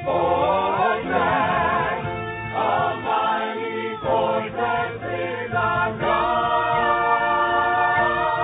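A choir singing together, the voices moving through a phrase and then holding a long chord for the last two seconds.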